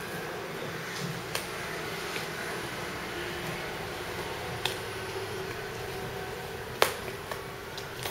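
Scissors snipping through packing tape on a cardboard box: a few scattered sharp clicks over a steady hiss, with one louder click near the end.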